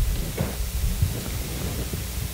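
Low rumbling and soft thumps of movement and handling noise, with a short crackle about half a second in.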